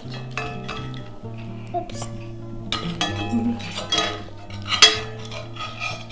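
Fork and cutlery clinking against a plate in several sharp clinks, the loudest near the end, over background music with held bass notes.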